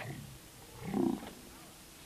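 Garbled, warped audio from a failing VHS tape playback: a falling pitch glide at the start, then a short, low, distorted vocal-like sound about a second in.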